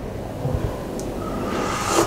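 Chicken broth poured from a steel ladle into a small ceramic bowl, then sipped to taste it for salt, with a short knock at the end.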